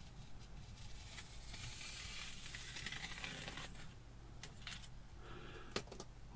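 Craft knife blade drawn through a soft foam wing along a metal straight edge: a faint hissing scrape lasting about two seconds, followed by a few light clicks near the end.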